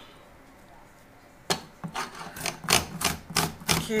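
Cucumber grated on a flat metal hand grater: quiet for about a second and a half, then quick rasping strokes, about four a second.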